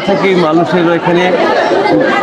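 A man speaking Bengali close to a clip-on microphone, with a crowd chattering around him.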